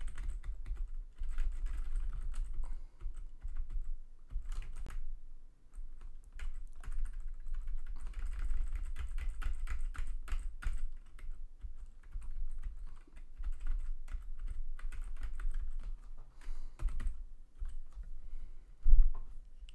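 Typing on a split computer keyboard: quick runs of keystrokes with short pauses between them.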